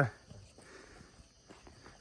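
Faint footsteps on a rocky dirt trail, with a steady high chorus of crickets or other insects behind them.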